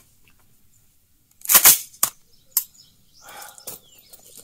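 An AR-style rifle being handled and readied to fire: one loud mechanical clack about a second and a half in, then two lighter clicks, with faint handling rustle near the end.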